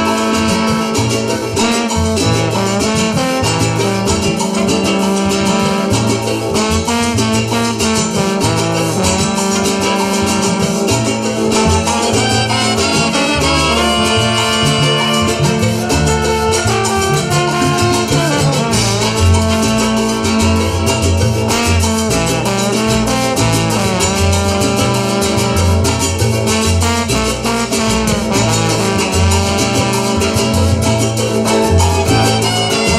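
Live cumbia band playing an instrumental passage: trumpets and saxophone carry the melody over guitars, a double bass and drums.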